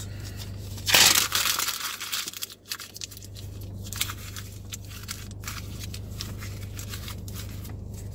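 A sheet of paper crumpled into a ball by hand: a loud crackling crush about a second in, then irregular crinkling that thins out over the next few seconds.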